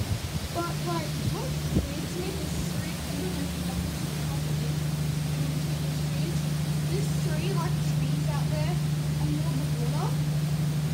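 A steady low machine hum that grows a little louder about four seconds in, over a constant haze of wind.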